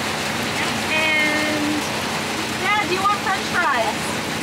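Heavy rain falling steadily, a continuous hiss. Voices speak briefly, with one held voiced sound about a second in and some talk about three seconds in.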